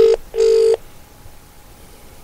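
Telephone line tone during a call being placed: a short beep, then a second beep of about half a second, both steady and at the same pitch.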